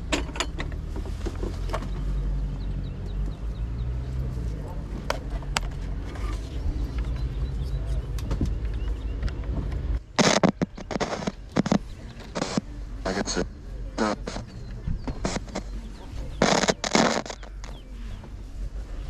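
An ITT Schaub-Lorenz Tiny 33 portable transistor radio being tried out by hand: a steady low rumble, then from about ten seconds in, loud, irregular bursts of static and garbled broadcast sound as it is switched on and tuned.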